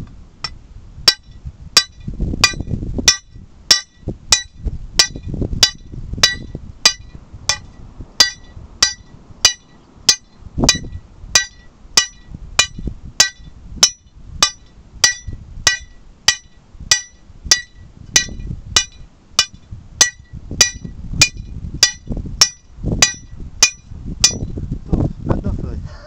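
Lump hammer striking the head of a steel hand-drill rod held on rock, a steady run of about one and a half blows a second, each a sharp metallic clink with a short ring. It is old-fashioned two-man hand drilling, the bit still cutting down into the rock. The blows stop shortly before the end.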